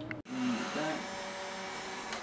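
Cordless drill running steadily as its bit bores into a pumpkin's wall, a continuous motor whine that starts abruptly about a quarter second in.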